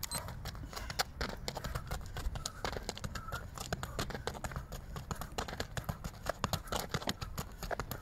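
Rapid, light footsteps of trainers on a rubberised athletics track as a runner steps quickly through an agility ladder: a fast, uneven patter of short foot strikes, several a second, over a steady low rumble.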